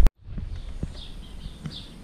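An abrupt cut, then a quiet outdoor background with a few faint clicks and some faint high chirps.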